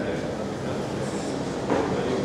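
Hubbub of several people talking at once in a lecture hall, overlapping conversations with no single voice standing out. A brief louder sound comes near the end.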